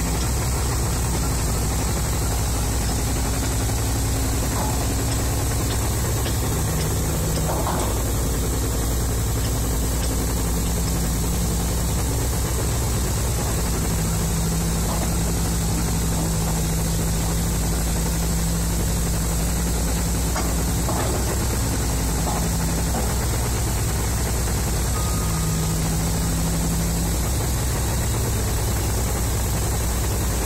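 Heavy diesel engine idling steadily, with a low hum that comes and goes several times.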